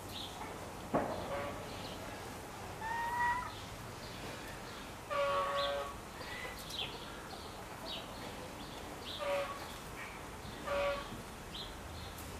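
Small birds chirping, short high chirps scattered throughout, with about four longer pitched calls of half a second or so and a single sharp knock about a second in.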